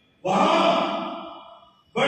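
A man's voice delivering a sermon in a chanted, recited cadence: one long phrase begins about a quarter second in and trails off, and the next starts at the very end.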